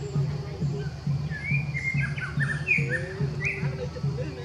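Wild birds chirping: a quick run of short, sliding high notes through the middle, over a steady low pulsing beat.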